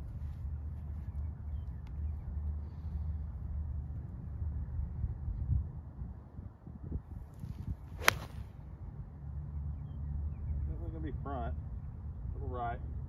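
A five-iron tee shot: the club swishes through on the downswing, then strikes the ball with a single sharp click about eight seconds in, heard over a steady low rumble.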